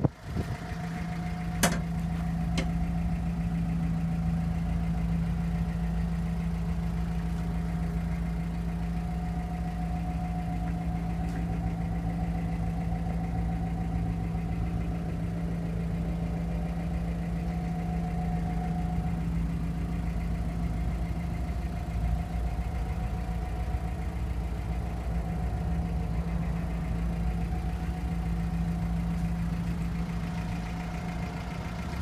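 Mitsubishi Jeep J3 engine idling steadily with an even hum. Two short clicks come about two seconds in.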